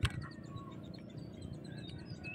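Faint bird chirps over quiet outdoor ambience, with one sharp click at the very start.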